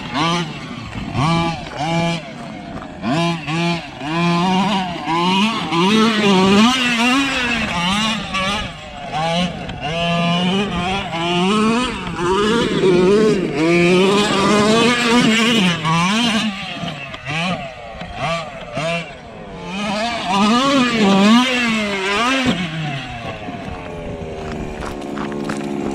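Two-stroke petrol engine of a 1/5-scale Losi MTXL radio-controlled monster truck, revving up and down over and over as it is driven hard across rough dirt, its pitch rising and falling every second or two.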